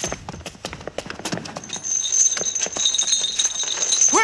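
Irregular sharp taps and knocks, several a second, over a faint steady high ringing tone.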